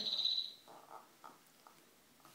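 Electronic trilling chirp from a baby's activity-table toy: a high warbling tone that fades out about half a second in, followed by faint small sounds.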